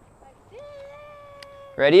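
A faint, high-pitched vocal call that rises at the start and then holds one steady note for about a second.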